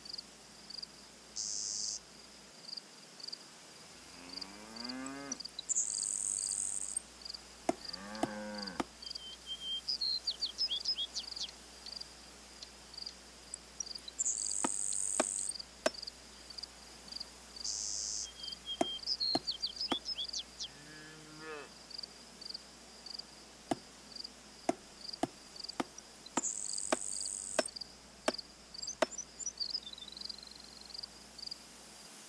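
Rural ambience: crickets chirping in a steady high pulse, with a cow lowing three times (about five seconds in, about eight seconds in, and again past twenty seconds). Short high insect buzzes, quick high chirps and scattered clicks come and go over it.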